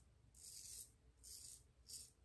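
Chiseled Face Legacy double-edge safety razor cutting stubble across the grain: three short, faint strokes, each a scratchy buzz.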